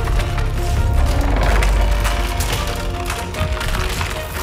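Film sound effect of a house's walls cracking: repeated sharp splintering cracks over a deep rumble that eases after about two seconds, with faint tense music underneath.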